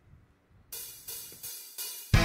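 Opening of a recorded heavy rock song: after a brief silence, a drummer's cymbal is struck three times, each hit ringing and fading.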